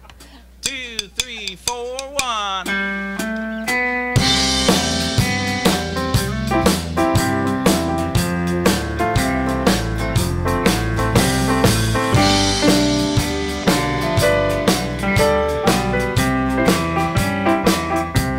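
A live country band plays the instrumental intro of a song in the key of C. For about four seconds a lone lead instrument slides between notes, then the full band comes in with a drum kit keeping a steady beat.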